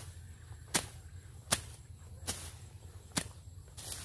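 Long-handled hooked brush knife slashing through weeds and low brush: about six sharp cutting strokes, roughly one every 0.8 seconds, in an even rhythm.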